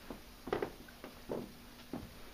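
Four soft, irregularly spaced thumps over a faint steady low hum.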